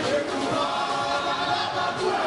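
Live concert music with singing voices over it, played loud through a stage sound system.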